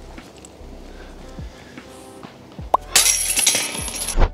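Background music, with a short edited sound effect near the end: a quick rising tone, then a bright, glassy burst of noise lasting about a second that cuts off sharply.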